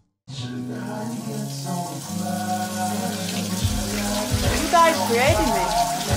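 An instrumental hip-hop beat starts after a brief silence: sustained chord tones over a steady hiss, with low bass-drum hits coming in about halfway through. Near the end a sampled voice with sliding pitch enters over the beat.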